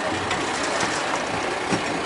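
Fire-brigade pump engine running steadily with a dense mechanical clatter.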